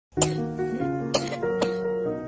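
A young boy sick with COVID-19 coughing: three short, sharp coughs, the first right at the start and two close together past the middle, over soft background music with held notes.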